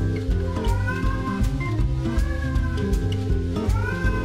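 A domestic cat meowing about three times, each a drawn-out call that rises and falls in pitch, over background music with a steady beat.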